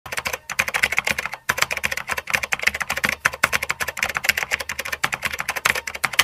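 A typing sound effect, with rapid keystroke clicks in a steady stream and two short gaps near the start, keeping time with text being typed out on screen.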